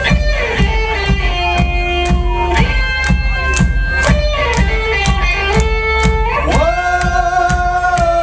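Live indie rock band playing an instrumental passage: electric guitars hold long notes that slide between pitches over a steady drum beat of about three hits a second, with a heavy bass low end. Near the end of the passage the notes rise and settle on a new chord.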